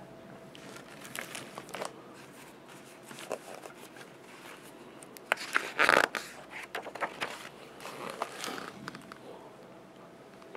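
Pages of a picture book being handled and turned: scattered light paper rustles and clicks, loudest as a page turns about six seconds in.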